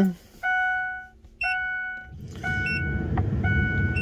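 Ford pickup's dashboard warning chimes sounding just after the ignition key is turned back on: two long chime tones, then shorter ones. A steady low rumble comes in about halfway through.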